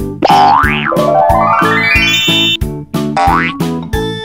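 Bouncy children's background music with cartoon sound effects: a quick boing that rises and falls about a quarter second in, a long rising glide over the next two seconds, and another short rising swoop near the end.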